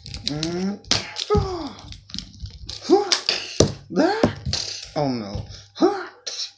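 A man's voice making wordless vocal sound effects for a toy fight, a run of bursts whose pitch slides up and down, mixed with a few sharp knocks.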